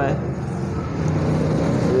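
Massey Ferguson 385's Perkins diesel engine idling with a steady low drone.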